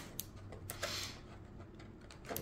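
Faint clicks and a brief rustle in a quiet room: a trading card in a clear plastic sleeve being handled in the fingers. The clicks come in the first second, with the rustle about a second in, then it settles to room tone.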